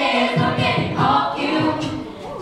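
All-female a cappella group singing in close harmony, several voices at once, with a low rhythmic beat coming in about half a second in.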